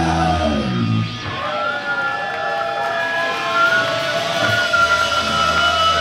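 Live hardcore punk band with distorted guitars, bass and drums. The full band drops out about a second in, leaving held, wavering distorted guitar notes ringing, and the band comes back in near the end.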